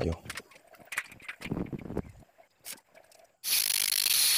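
A few light clicks and knocks, then about three and a half seconds in an angle grinder cuts in abruptly with a loud, steady hiss as its grinding disc works down the welds on steel tubing.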